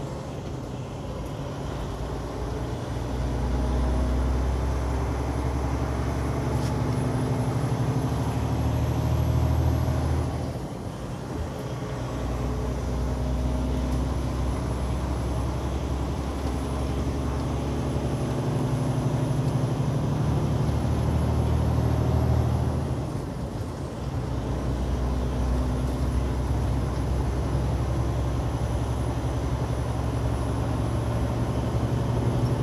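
Heavy truck's diesel engine and road noise heard from inside the cab while driving. The engine note is steady with a faint high whine that slowly climbs. Twice, about ten seconds in and again about 23 seconds in, the engine briefly drops away and the whine falls, as at a gear change, before both pick up again.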